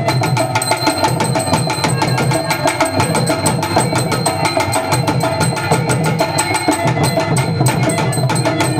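Live folk-drama band drumming at a quick, even beat, with snare-style drums and hand drums played together as dance accompaniment.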